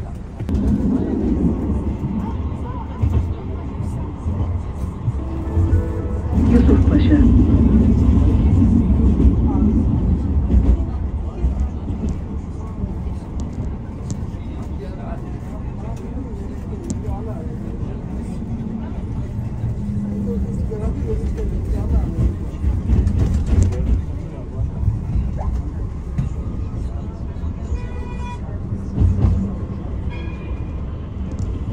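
Low rumble of a tram running on its rails, heard from inside the car, loudest for a few seconds near the start. Music plays over it, with voices in the background.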